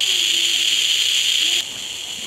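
Hiss from a 433 MHz superregenerative receiver module played through a small speaker. It comes on suddenly and loud, the sign that the receiver is no longer quieted by a carrier and is picking up only noise, then drops to a lower level about a second and a half in.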